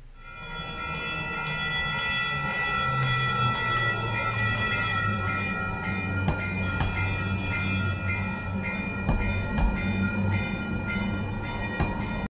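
Light-rail train passing close by: a low motor hum with steady high ringing tones over it that break into a regular rhythm, and a few sharp clicks in the second half as the wheels cross track joints.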